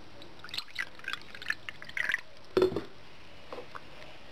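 Water poured from a drinking glass into a plastic bowl of vinegar, splashing and dripping, with a louder burst about two and a half seconds in.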